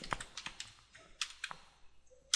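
Faint computer keyboard keystrokes: a handful of separate key presses in quick clusters, with a short pause about midway.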